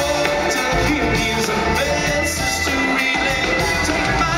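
Live band music with electric guitar, bass and a steady beat, and the singer's voice over it.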